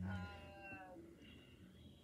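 A single short meow-like call at the start, falling in pitch and lasting well under a second, over a low steady hum.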